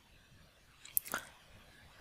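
Near silence with one faint, short mouth noise from the narrator a little after halfway: a sharp click followed by a brief lip-smack-like sound.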